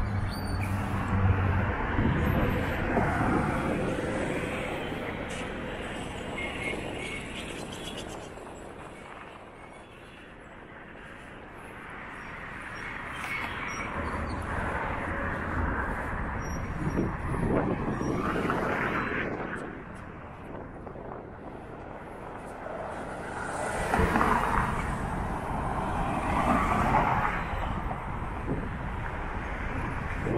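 Road traffic on a city street: cars passing one after another, the noise swelling and fading as each goes by, with a quieter lull about a third of the way in.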